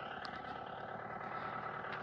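A motor vehicle's engine running steadily and fairly quietly, with a faint even whine in it.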